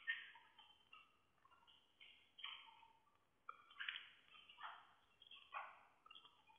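Near silence, broken by a few faint, short, irregularly spaced scratches of a stylus writing on a tablet PC screen.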